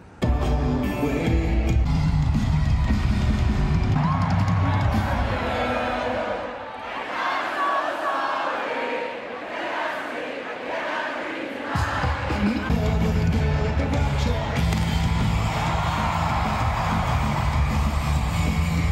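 Live rock band playing in an arena with a cheering crowd. The heavy bass drops out for several seconds midway, leaving mostly the crowd shouting and singing, then the band comes back in at full volume.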